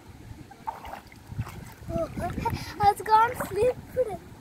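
Water splashing around bare feet wading in a shallow stream. In the second half a high voice cries out in short rising and falling calls as she slips and catches herself on a rock.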